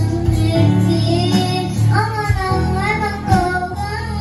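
A young girl singing a song into a microphone, backed by a Yamaha keyboard and an electronic drum kit. In the second half she holds a long note with a wavering vibrato.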